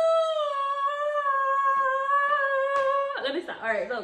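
A woman's long, drawn-out wail, held on one slightly falling note for about three seconds, breaking into shorter wavering cries near the end.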